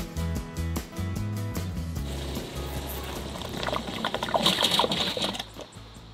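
Background music with a steady beat; from about two seconds in, a siphon hose draws the last bleach water out of a plastic bucket into an RV's fresh water tank, a rippling watery hiss that fades out just before the end as the bucket runs dry.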